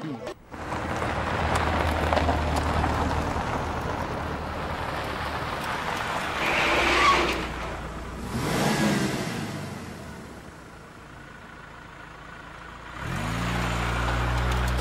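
A car engine running as the vehicle drives, with steady road noise; it swells twice in the middle, then fades away. Music comes in near the end.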